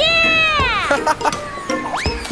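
A high, pitched cartoon "wheee" that glides down in pitch over about a second as characters ride a waterslide, over light children's music; a short upward glide comes near the end.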